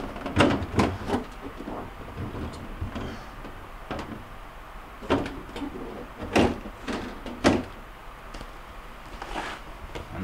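Plastic freezer parts being handled and snapped into place inside a refrigerator's freezer compartment: a scatter of sharp clicks and knocks, several in the first second and more between about four and seven and a half seconds in.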